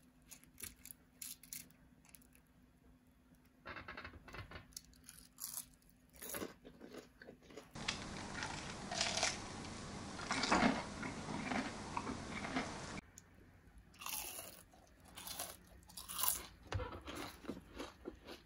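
Crunching and chewing of fried onion rings, a run of short crisp crunches and mouth clicks. For about five seconds in the middle the chewing is much closer and louder.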